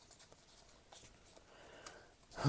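Near silence, with a few faint soft clicks of trading cards being handled and slid against each other in the hand.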